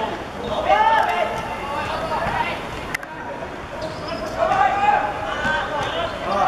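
Voices calling out during a football match, in a language the transcript did not pick up, with a single sharp click about three seconds in.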